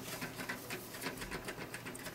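Light, irregular clicking and scraping as fingers work a speaker wire into a screw binding post on the back of a stereo receiver, opening the terminal and handling the wire.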